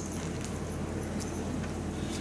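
Faint rustling of Bible pages being turned at a pulpit, over a steady low hum from the sound system.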